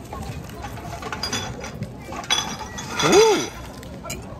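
A man biting into and chewing a paper-wrapped fried arancino rice ball, with small clicks and crackles, then a rising-and-falling 'mmm' of enjoyment about three seconds in, the loudest sound.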